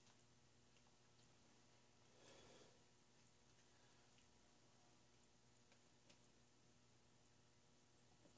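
Near silence: quiet room tone with a few faint ticks of small brass fittings being handled on a model steam engine.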